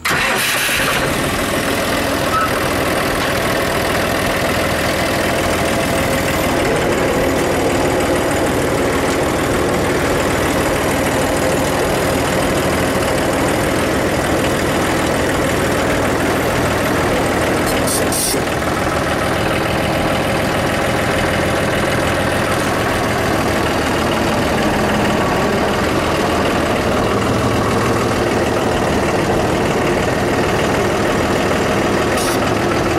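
Compact tractor engine running steadily while the tractor drives over a gravel track, with one brief sharp click a little past the middle.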